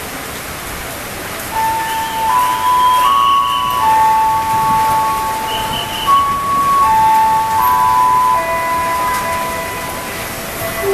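Heavy rain hissing steadily, and about a second and a half in a slow melody of long held single notes starts over it, stepping from note to note and running on.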